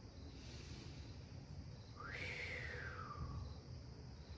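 A single faint, high call from a pet: it rises quickly about two seconds in, then slides slowly down over about a second, over a low steady room hum.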